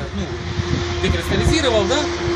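A motor vehicle running nearby: a low rumble with a steady, unchanging hum that sets in about half a second in, with a voice over it.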